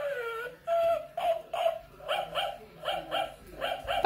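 A run of short, high barking yips, about three a second, coming in quick pairs toward the end.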